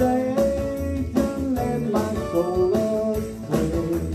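Live church worship music: a steady beat with guitar-like accompaniment under a sung melody.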